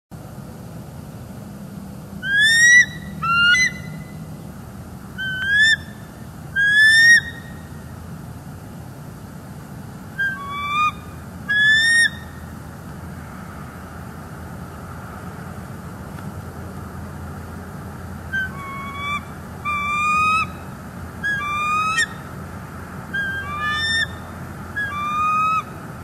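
Bald eagle calling: short, high, rising notes in groups of one to three, a pause midway, then a faster run of calls near the end as the birds are on alert.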